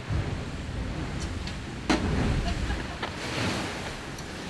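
Wind and rushing sea water around an offshore racing yacht under way, heard at its open companionway hatch, with wind buffeting the microphone. A sharp knock about two seconds in is the loudest moment.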